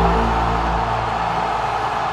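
Music: the last sustained low chord of a closing sting, held and slowly fading away.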